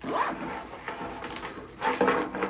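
Camouflage nylon sling bag handled and pulled across a wooden table, with fabric rustling and scraping and a louder scrape near the start and again near the end.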